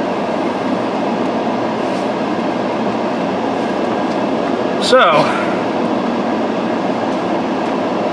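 Car air-conditioning fan blowing steadily inside the car's cabin, an even hiss with no engine note in it.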